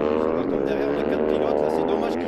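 Several motocross motorcycles' engines revving together on an ice track, their overlapping pitches rising and falling as the bikes ride through a corner.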